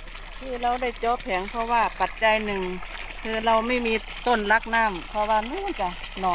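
A person talking over the faint, steady splash of water pouring from a solar pump's outlet pipe into a rice paddy.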